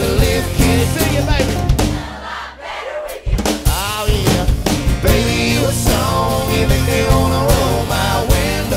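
Live country band playing acoustic guitars, electric bass and drums, with a lead vocal. About two seconds in the band drops out briefly, then comes back in full a second or so later.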